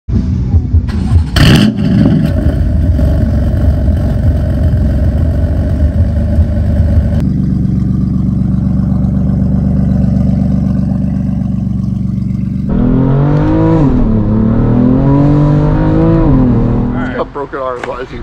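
BMW F80 M3's twin-turbo inline-six exhaust, fitted with catless downpipes and a single mid pipe, heard in three separate takes: loud revving with one sharp crack about a second and a half in, then a steady idle, then revs gliding down and back up. A laugh comes right at the end.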